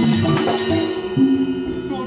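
Balinese gamelan accompanying a dance: metallophones ringing in sustained tones under a busy, clashing top layer that drops away about a second in, leaving the bronze tones hanging.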